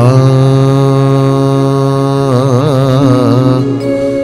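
A man singing a slow devotional chant into a microphone. He holds one long note that wavers in pitch about halfway through, then moves to a different note near the end.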